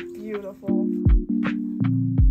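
Background music: a relaxed beat of kick drum and crisp percussion under sustained chords.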